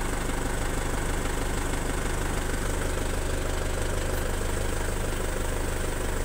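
Heli forklift engine idling steadily, an even hum with no rise or change in pitch.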